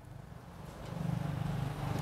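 An engine running with a low, rapidly pulsing rumble that fades in over the first second and then holds steady.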